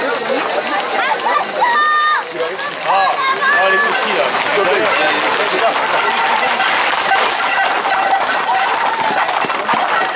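A crowd of spectators talking and calling out over one another, loud and continuous, with a couple of short held calls about two and three seconds in.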